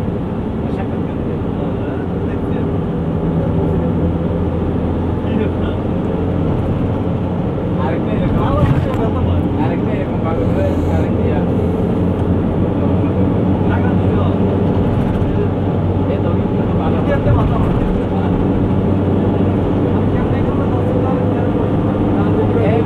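Vehicle engine and road noise heard from inside the moving vehicle: a steady drone, with indistinct voices of people talking in the background.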